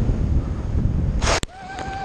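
Wind rushing over a body-mounted camera's microphone under a parachute, then a little over a second in a loud, sudden burst of noise as the skydiver touches down feet-first onto the wet slip n' slide, and the wind cuts off. Right after, a person's voice holds one long note as the slide begins.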